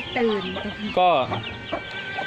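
Domestic village chickens clucking and calling around the nest boxes. The loudest call comes about a second in and drops in pitch, and many short high chirps run throughout.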